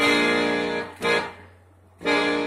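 Siwa & Figli piano accordion playing bass-button chords: an A-flat minor seventh held for about a second, then a brief B-flat dominant chord that dies away. This is the minor four to dominant five leading back to E-flat.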